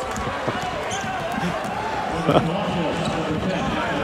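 Basketball arena ambience: steady crowd murmur with a basketball being dribbled on the court.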